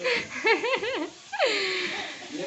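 A young girl laughing in a run of quick bursts, then a breathy high cry that slides down in pitch near the end.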